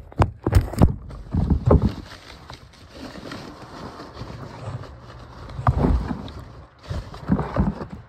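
Handling noise on a phone's microphone: sharp knocks as the phone is set down face down, then muffled bumps and rubbing, with a few heavier thumps, as things are handled next to it.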